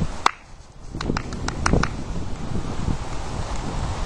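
Wind rumbling on the microphone, with a sharp click about a quarter second in and a few more clicks between one and two seconds in.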